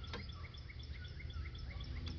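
A bird chirping in the background, a quick run of short repeated high notes about five a second, over faint steady low background noise.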